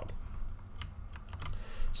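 Computer keyboard keys pressed in a few separate clicks.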